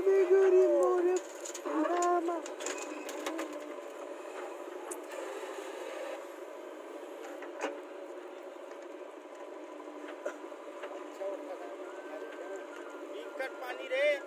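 People's voices calling out over the first three seconds or so, then the diesel engine of a JCB 3DX backhoe loader running steadily as it digs with its rear bucket.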